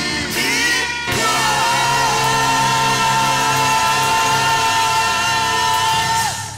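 Live music: a male vocalist singing into a microphone over instrumental backing, holding one long note from about a second in.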